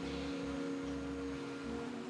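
Soft background music: a sustained low drone of a few steady, held tones with a faint low hum beneath.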